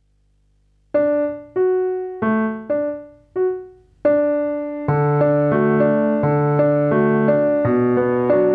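Piano music. After a silent first second, single notes are picked out slowly one at a time, each fading away. About five seconds in, fuller chords and a bass line join them.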